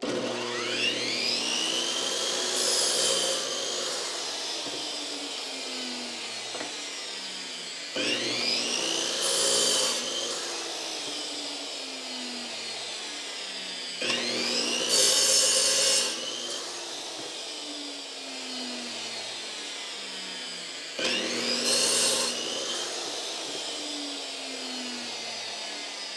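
DeWalt chop saw (electric miter saw) started four times. Each time the motor spins up with a rising whine, the blade cuts through a block of wood, then the saw coasts down with a falling whine. It is running from a portable power station's inverter and reaches speed without hesitating.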